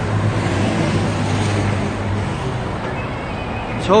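Street traffic noise: a steady wash of passing vehicles with a low engine hum that fades about two seconds in.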